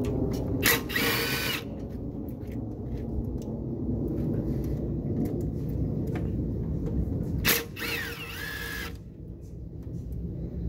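A handheld cordless power driver on an extension, turning an engine-top bolt in two short runs: a rising motor whine of about a second near the start, and another of about a second and a half around seven and a half seconds in. A steady low rumble lies under both.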